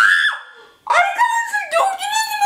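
A person screaming in fright at a jump scare: a short high shriek that breaks off just after the start, then about a second in a long wavering scream that slides down in pitch.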